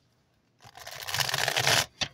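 A deck of oracle cards being riffle-shuffled: a fast fluttering rush of cards that starts about half a second in and stops sharply after about a second.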